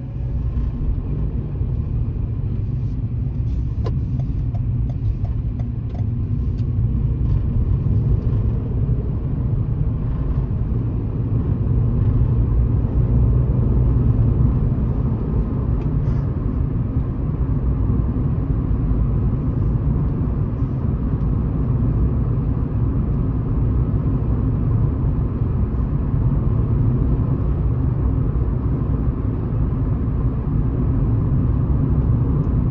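Steady low rumble of a car's engine and tyres on the road, heard from inside the cabin, growing a little louder as the car picks up speed out of the roundabout. A few faint clicks sound in the first few seconds.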